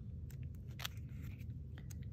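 Paper sticker sheets of a mini sticker book being flipped: several short, crisp paper clicks and light rustles.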